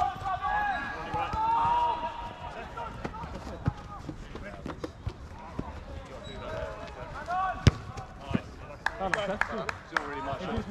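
A football being kicked on an artificial pitch: a series of sharp thuds from ball strikes, the loudest about three-quarters of the way through, with players' shouts and calls between.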